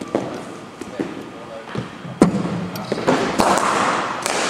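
Cricket balls knocking in an echoing indoor sports hall: a few light knocks, then one sharp knock with a ringing echo about two seconds in.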